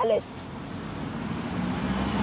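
Road traffic in the background: a steady rushing noise with a low engine hum that slowly grows louder as a motor vehicle approaches.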